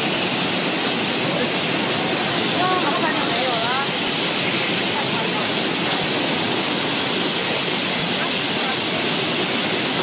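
QX 22 air-bubble fruit and vegetable washing machine running: a steady, loud rush of water from its spray nozzles and bubbling wash tank.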